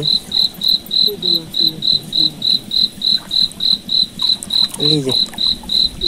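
A cricket chirping steadily: one high, even pulse repeated about three and a half times a second.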